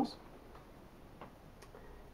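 Quiet room tone with a few faint, sharp ticks.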